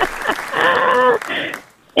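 Applause with a voice over it, fading out about a second and a half in.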